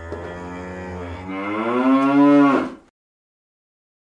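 A single long moo that grows louder and rises in pitch after about a second, then drops and stops just before three seconds in.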